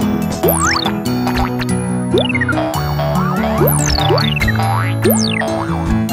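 Cartoon background music with steady held notes, overlaid with many short sliding sound effects: quick upward swoops and high falling whistles, several a second, as animated toy parts fit together.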